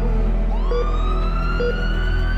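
A siren sound effect: a wail that starts about half a second in and rises slowly in pitch, over a low steady drone, with a short beep repeating about once a second.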